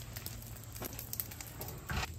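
Faint crackling sizzle of raw pizza dough par-cooking in a touch of oil on a hot flat-top griddle, with a light knock near the end.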